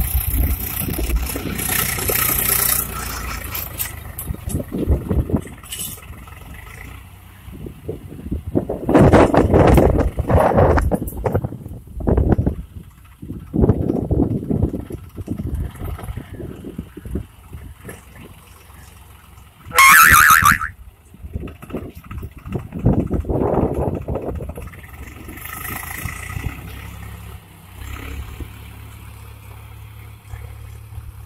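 Swaraj 735 FE tractor's diesel engine running under load as it drags a tine cultivator through dry soil, the sound coming and going in loud, uneven surges. About twenty seconds in, a harsh high-pitched sound lasting about a second stands out above it.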